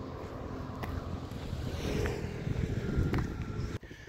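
Wind noise on the microphone with road traffic going by, growing a little louder about two seconds in.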